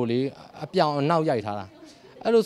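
Only speech: a man talking in short phrases with brief pauses, his voice rising and falling in pitch.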